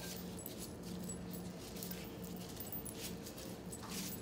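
Faint crinkling and squishing of clear plastic gloves kneading soft cream filling by hand, with scattered small ticks over a low steady hum.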